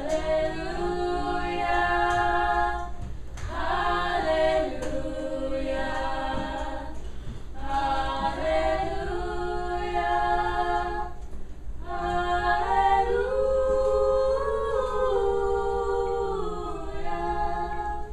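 Unaccompanied voices singing a cappella in long held phrases, four in all, each separated by a brief pause for breath.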